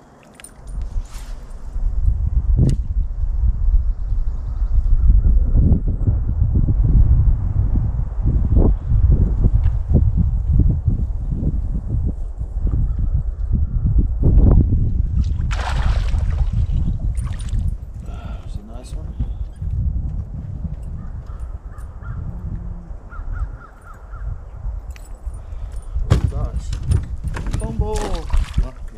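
Heavy low rumble that eases off after about twenty seconds, with birds cawing now and then.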